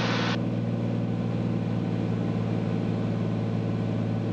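Cirrus SR22's six-cylinder piston engine and propeller running steadily at low power in the landing flare, heard inside the cabin as an even drone.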